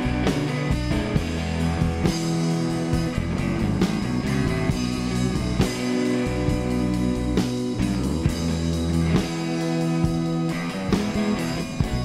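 Rock band playing an instrumental passage live: two electric guitars, electric bass and a drum kit keeping a steady beat, with no vocals.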